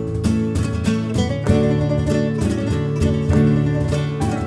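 Instrumental interlude of a riberenca, a Valencian traditional song: guitars and llaüt pick a quick run of plucked notes over a bass line, between the singer's verses.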